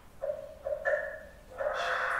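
Sound from a film clip played through the room's speakers: three short pitched calls in the first second, then a louder, fuller sound from about one and a half seconds in.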